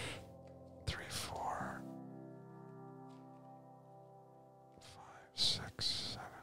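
Quiet podcast background music of steady, sustained ambient chords, with a few brief whispered or breathy sounds about a second in and again near the end.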